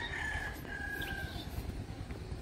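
A rooster crowing, one long drawn-out call that fades out about a second and a half in.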